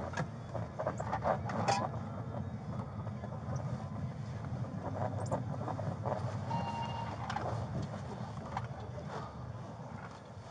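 Patrol car's engine running low and steady, heard from inside the cabin as the car is driven slowly, with scattered light clicks and rattles and a brief tone about seven seconds in.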